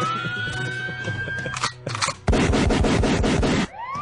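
Siren sound effect winding up to a steady high wail, broken by a loud, noisy crash-like burst lasting about a second and a half, then the siren winding up again near the end, with music underneath.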